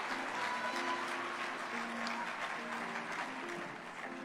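A congregation applauds over soft background music of sustained chords that change every second or so. Both ease off slightly toward the end.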